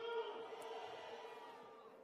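The fading tail of a man's shouted "Hallelujah" through an outdoor PA system. It rings on faintly at one steady pitch and dies away over about two seconds.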